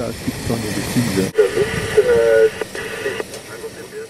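People talking quietly in the background, over a steady hiss.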